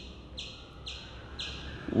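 A short, high chirp repeating evenly about twice a second, four or five times, over a faint low hum.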